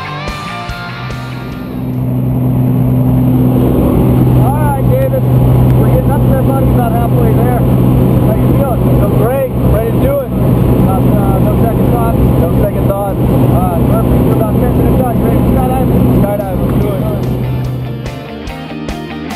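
Steady drone of a small single-engine plane's engine and propeller heard from inside the cabin. It comes in about two seconds in and drops off near the end.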